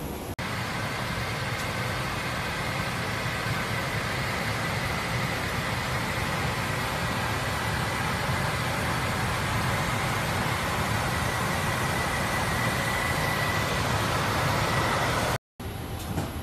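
Steady drone inside a Bombardier CRJ's cockpit: an even rumble with a faint high whine held through it. It cuts off suddenly near the end.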